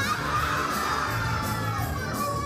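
A group of children shouting and cheering together over pop music. The shout breaks out all at once and fades toward the end.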